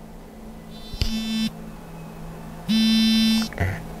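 Mibro Watch GS smartwatch's vibration motor buzzing twice, a short buzz about a second in and a longer, louder one near three seconds in. It is being paged by the phone's find-watch function; the watch has no speaker, so it signals by vibrating.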